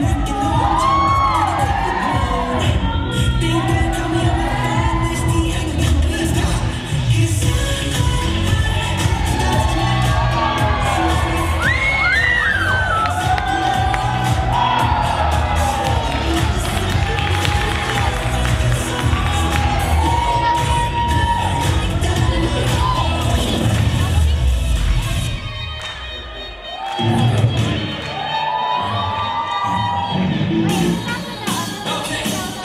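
Dance music with a steady beat and vocals, with an audience cheering and shouting over it. Near the end the music thins out briefly, then picks up again.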